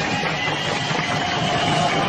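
Concert-hall crowd noise under a steady, held electric guitar tone from the stage amplifiers.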